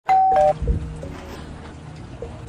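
Ring video doorbell pressed, sounding a quick two-note falling ding-dong chime about half a second long.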